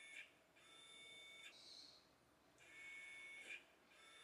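Near silence, with a faint high whine that comes and goes three times, about a second each.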